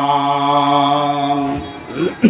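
A man's voice chanting one long held note, steady in pitch, in the melodic style of a sung sermon, trailing off near the end.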